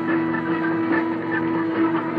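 A live rock band's amplified instruments hold a steady, sustained drone of several tones at once, with electric guitar feedback-like sustain, as the song winds down to its end.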